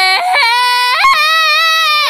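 A woman singing high, sustained belted notes. The pitch steps up twice, the second time about a second in, and wavers near the end.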